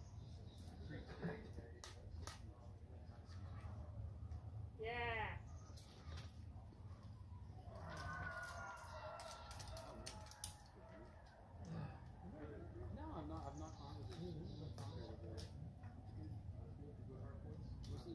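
Faint, indistinct voices with scattered sharp clicks, and one short rising call about five seconds in.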